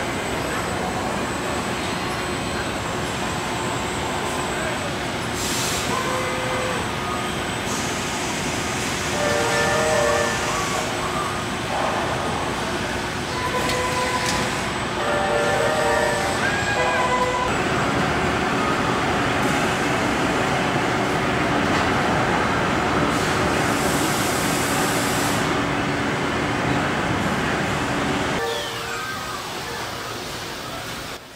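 Industrial robot arms on a car-body assembly line working: steady machinery noise with a low hum throughout and short pitched whines coming in clusters through the middle stretch.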